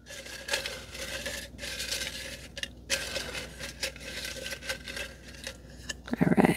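A hand rummaging through slips in a black pot, with rustling and scattered light clicks and scrapes against the pot.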